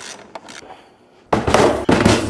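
A few faint clicks of battery cable clamps being handled. About a second and a half in, a sudden loud rough noise lasting about a second, as a heavy lithium (LiFePO4) battery is set down and slid onto a wooden workbench.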